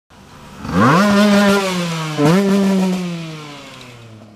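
Enduro motorcycle accelerating hard close by, its engine pitch climbing quickly, with a short dip and climb again a little after two seconds as it shifts gear, then the engine note slowly falling and fading as it moves off.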